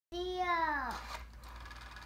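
A young child's voice: one drawn-out word or call, held steady, then falling in pitch and ending about a second in.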